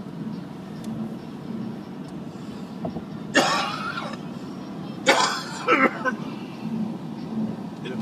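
Steady low rumble of a car's cabin while driving, with a person clearing their throat once, loudly, about three and a half seconds in.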